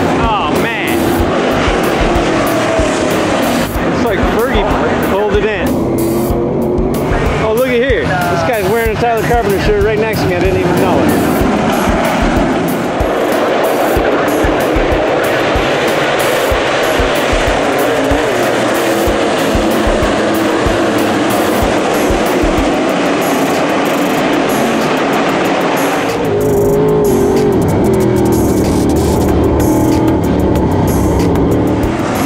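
Dirt late model race cars' V8 engines running at speed around a dirt oval, with pitch rising and falling as cars go by, mixed with music. From about four seconds before the end, one car's engine is heard louder and closer.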